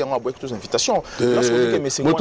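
Men talking in conversation. In the second half one voice holds a long, drawn-out vowel, like a hesitant "euh".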